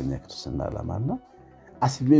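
A voice singing phrases over music with a plucked-string, guitar-like accompaniment; the voice pauses briefly in the second half.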